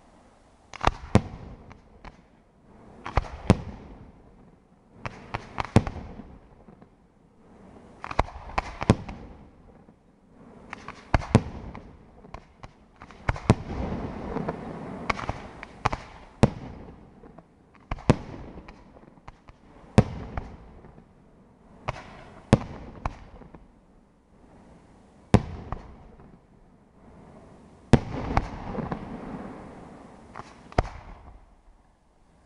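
Aerial fireworks display: sharp bangs of bursting shells come about every two seconds, with crackling between them that thickens in the middle and again near the end.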